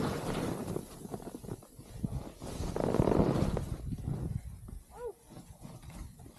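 Ski edges scraping and chattering on firm snow, with wind rumble on the microphone, louder for a second or so about halfway through. About five seconds in comes a brief, high vocal cry.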